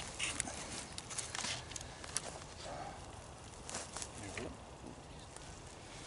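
Dry brush and branches rustling and crackling as a gloved hand works among them, a scattered series of sharp clicks and snaps that thins out in the second half.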